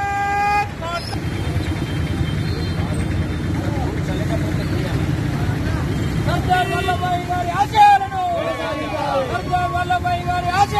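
Roadside traffic: a vehicle horn toots briefly at the start, then a vehicle engine rumbles by for several seconds. From about six seconds in, men's raised voices shout over it.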